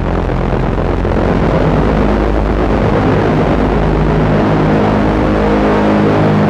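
Dark drone music played live on synthesizers: several low tones held steady under a dense wash of noise, growing a little louder about a second in.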